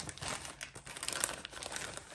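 White protective wrapping crinkling and rustling as hands pull it open around a newly unboxed camera, a continuous run of small crackles.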